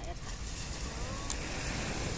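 Wind noise on the microphone over low surf from small waves breaking on the beach, a steady rushing with most weight in the low range. A brief faint voice comes about a second in, and a small click follows just after.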